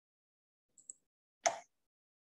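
A couple of faint short clicks, then one louder single pop about one and a half seconds in.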